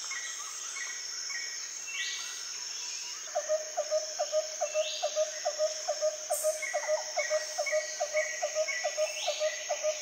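Outdoor nature ambience: steady insect trilling with repeated bird chirps and calls. From about a third of the way in, a lower call repeats about three times a second.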